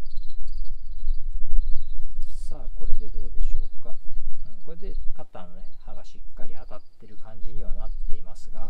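Low wind rumble on the microphone. From about two and a half seconds in, a man's wordless voice rises and falls in pitch, like humming.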